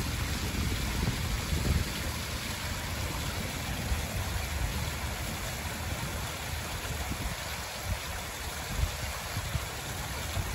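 A small pond fountain: water spouting up and splashing steadily over flat stones and back into the pond. Low, uneven rumbles of wind on the microphone sit underneath.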